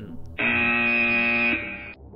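A buzzer sound effect: one loud, steady buzz lasting about a second, then trailing off, of the game-show 'wrong answer' kind.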